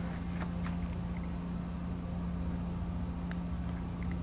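A steady low hum, with a few faint short scratches of a craft knife cutting through paper on a cutting mat.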